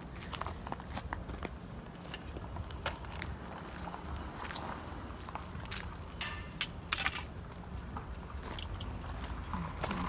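Scattered light clicks, crackles and scuffs of movement on a gravel surface, over a steady low rumble.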